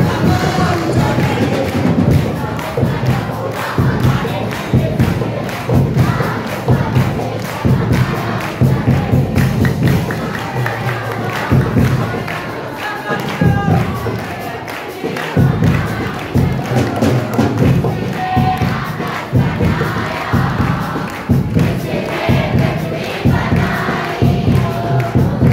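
A congregation singing and shouting together in loud, fervent worship over amplified music with rhythmic drum beats.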